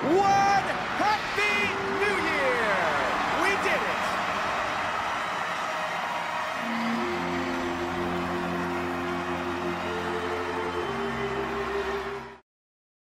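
Large crowd shouting the last seconds of the New Year countdown, then cheering and whooping in a dense wash of voices. About six and a half seconds in, music with long held chords starts over the cheering.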